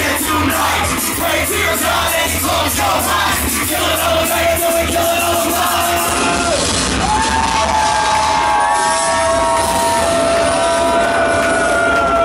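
Loud rap backing beat on a club PA with the crowd shouting. About halfway through the drum hits drop out, leaving long held notes and shouting.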